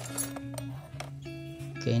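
Background music with steady held notes, over a few light clinks of metal wrenches and pliers being shifted in a plastic toolbox.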